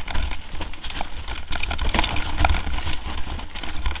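Mountain bike clattering and rattling over a rocky trail on a fast descent, a string of irregular knocks and clicks, with heavy wind rumble on the microphone.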